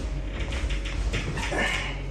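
Baby monkey whimpering in short high cries, the loudest just before the end.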